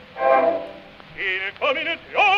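An early recording of an operatic baritone delivering two short phrases, half-spoken rather than sung, with brief gaps between them.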